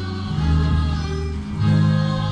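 Church-style music with a choir holding sustained chords over long low notes; the chord moves and swells about half a second in and again near a second and a half in.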